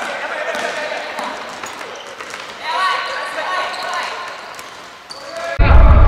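A futsal ball being kicked and bounced on a hardwood gym floor, heard as scattered sharp thuds, mixed with players' voices calling out across the large hall. Near the end the sound cuts abruptly to a loud low rumble.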